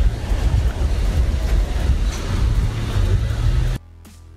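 Wind buffeting a phone's microphone: a loud, steady, low rushing noise. It cuts off suddenly near the end.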